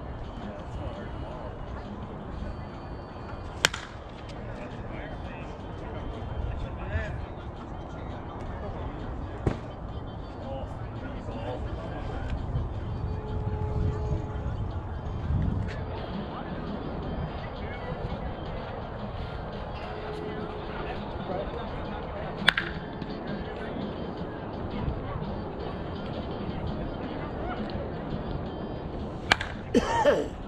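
Softball bat striking the ball four times: sharp, short cracks several seconds apart, over a steady low background noise.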